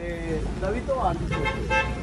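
A car horn honks briefly a little over a second in, over the low rumble of street traffic.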